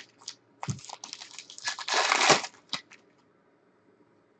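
Foil wrapper of a Panini Prizm football card pack crinkling as it is handled and torn open. The longest, loudest crackle comes a little before the middle, and it goes quiet after about three seconds.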